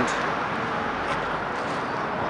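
Steady street traffic noise from cars passing on a busy road.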